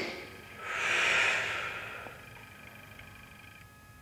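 A man taking one deep, audible breath through a side-bend stretch, lasting about a second and a half.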